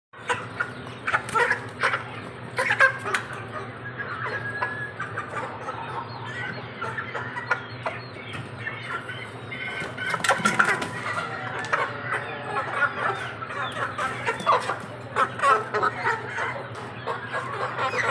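A flock of young Aseel and Shamo chickens clucking and calling all at once, with sharp bursts of wing flapping as they jump up in a scramble; the loudest flurries come near the start and about ten seconds in.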